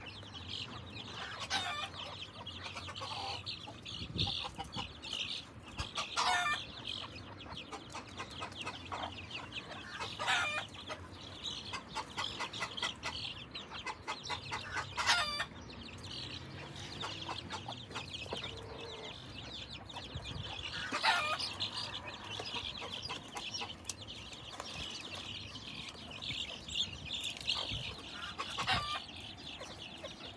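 Chickens clucking, with a continuous high peeping of chicks and a louder call every few seconds.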